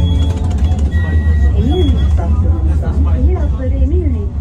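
Tram running, heard from inside the car: a steady low rumble with a couple of brief high whines early on. A person's voice talks from about halfway in.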